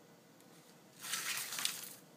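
Nylon paracord strands being pulled through a gun-sling swivel: a brief scratchy slide of cord on cord and swivel, lasting about a second, starting about a second in.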